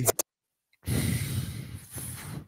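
Rap playback cuts off abruptly as it is paused. After half a second of dead silence comes a person's long, breathy sigh into the microphone, lasting about a second and a half.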